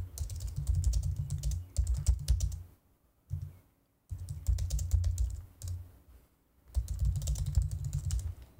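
Rapid clicking and tapping of typing on a computer keyboard, with dull thuds under the keystrokes. It comes in three bursts with short pauses between them.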